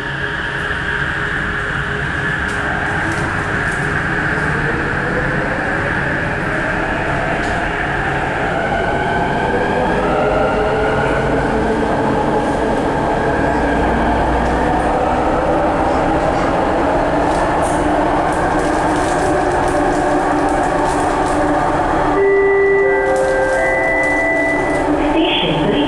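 Inside the cabin of a rapidKL ART Mark III metro car gathering speed: the whine of the linear-induction traction drive rises in pitch over the steady rumble of the car running on the track, then holds high. Near the end a short set of steady tones sounds, like an onboard chime.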